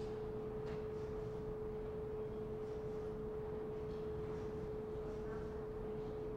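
A steady single-pitched hum sounds throughout, with a few faint, irregular clicks, typical of taps on an iPad's on-screen keyboard.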